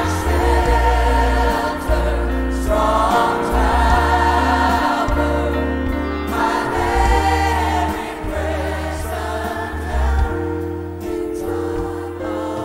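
Live gospel praise-and-worship music: a group of singers in phrases over a full band with electric bass, drums and keyboard, the bass line strong and steady.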